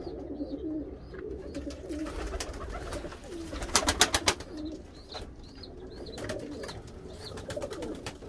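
Many domestic pigeons cooing together in a loft, a continuous low warbling, with a quick run of sharp claps about four seconds in.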